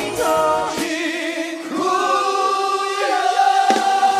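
Music with singing voices: wavering sung lines, then from about two seconds in one long held note.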